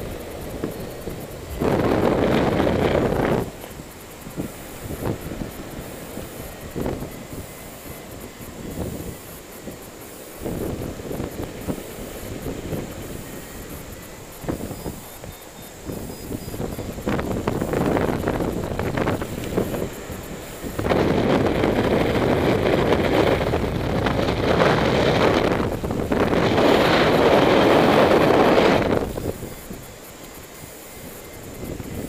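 Airflow buffeting the camera microphone during paraglider flight, a rushing noise that comes and goes in gusts, loudest about two seconds in and through most of the last third.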